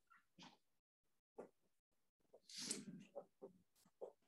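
Mostly near silence, broken by a few faint short strokes of a marker writing on a whiteboard. About two and a half seconds in comes a louder, half-second noisy burst.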